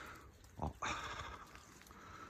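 A brief spoken fragment, then a short burst of rustling that fades into faint rustle of footsteps moving through dense undergrowth.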